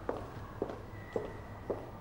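Footsteps on a hard floor, four even steps at about two a second.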